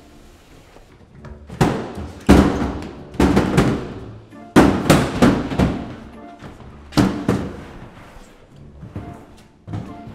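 Heavy plastic storage bins bumping and thudding against stair steps as they are hauled up a stairwell: a run of loud, irregular thumps in clusters of two or three, with a short echo after each, fading out after about seven seconds and one last bump near the end. Background music runs quietly underneath.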